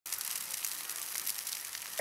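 Wildfire flames burning through trees and brush: a steady hiss with many small, irregular crackles.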